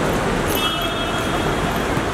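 Steady road traffic noise from vehicles at an airport kerb. About half a second in comes a brief steady tone lasting about a second.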